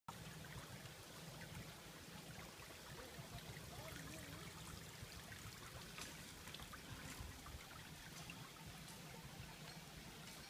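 Faint, steady trickle of running water, with a few light clicks scattered through it.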